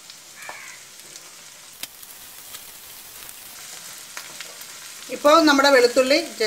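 Peeled garlic cloves sizzling steadily as they fry in a pan, with a single click about two seconds in.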